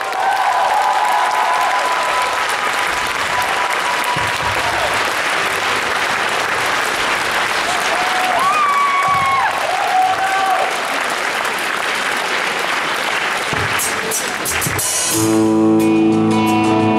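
Concert audience applauding and cheering, with a few voices calling out about halfway through. About a second before the end, an acoustic-electric guitar starts strumming chords.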